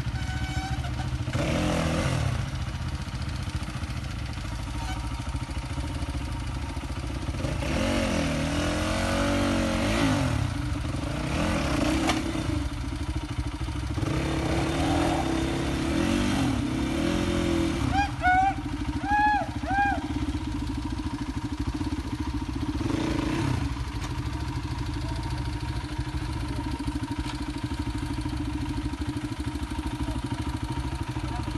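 Enduro dirt bike engines running on a steep, rocky climb, idling steadily and revved in several bursts that rise and fall in pitch, mostly through the middle of the stretch, as the riders fight their bikes up the slope.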